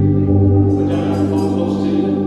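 Gospel music in church: sustained organ chords with voices singing along, the bass note shifting at the start.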